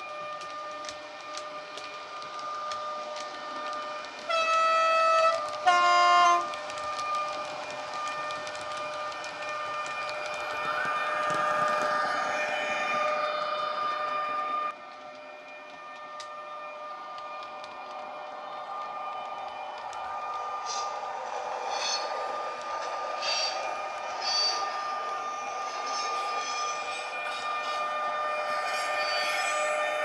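A model Taurus electric locomotive's sound decoder, playing real CAT train recordings, sounds two horn blasts about four seconds in, the second lower than the first. The locomotive's steady electric traction whine then builds as it gets under way. The sound drops suddenly partway through, then builds again with rapid clicking of the model's wheels over the track as the train approaches.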